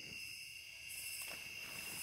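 Chorus of crickets and other night insects: several steady, high-pitched trills sounding together.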